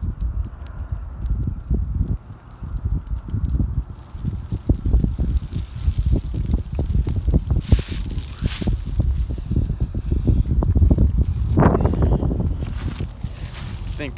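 Gusty wind buffeting the phone's microphone, a rumbling, fluttering roar that rises and falls, with a few brief hissy bursts about eight and twelve seconds in.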